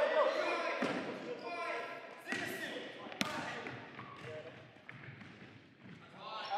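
Futsal ball being kicked and bouncing on a wooden sports-hall floor: a few sharp thuds, the loudest about three seconds in, amid players' calls.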